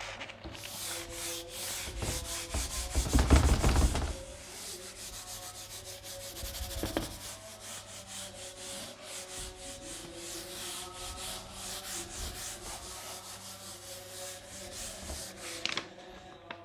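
A whiteboard being wiped clean with a handheld eraser: quick back-and-forth rubbing strokes across the board, heaviest about three seconds in.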